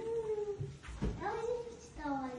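A high voice making two long drawn-out calls, each rising in pitch and then held for most of a second.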